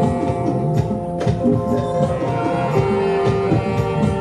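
A live band playing: long held notes over a moving bass line, with percussion strikes throughout.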